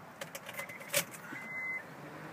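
Car keys jangling and clicking, with one louder click about a second in, then an Acura RSX's electronic warning chime sounding a steady single-pitch beep, repeating about once a second.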